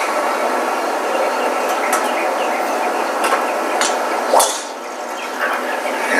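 A golf driver striking the ball off the tee: one sharp crack about four and a half seconds in, over steady background noise.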